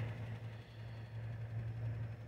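A steady low hum with faint background noise, and no distinct events.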